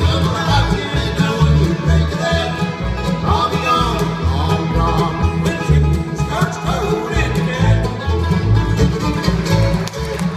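A bluegrass band playing live: banjo rolls, strummed acoustic guitar and upright bass over a steady beat, with fiddle in the mix.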